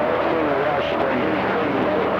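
CB radio receiver on channel 28 picking up distant skip stations: a steady rush of band static with faint, garbled voices in it.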